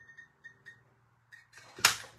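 Hand-held circle paper punch snapping shut once through the card wall of a small paper box, cutting a thumb notch, with a short sharp crack near the end. Before it come a few faint clicks of handling as the punch is lined up.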